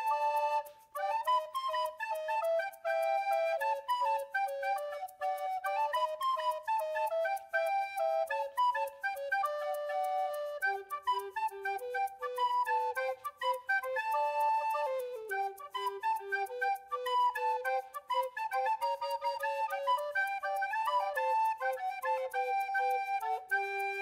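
Background music: a flute-like melody of held notes moving up and down in pitch.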